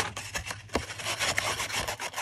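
Foam ink blending tool scrubbing Distress Ink onto the cut edges of a kraft card frame: a quick, irregular run of short rubbing strokes on the card.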